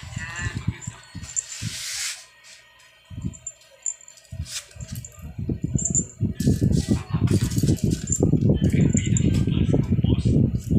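A kitten batting and pawing at a small zippered fabric pouch on a hard floor: a jumble of scuffs, knocks and rattles. They are sparse at first and come thick and fast from about six seconds in.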